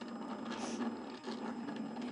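Slice handheld electronic die-cutting machine running as it cuts a flower shape from cardstock: a small motor whirring steadily.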